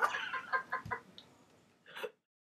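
Women laughing hard over a video call, a quick run of short laughing bursts that fade out about a second in; a brief burst of sound comes just before the end.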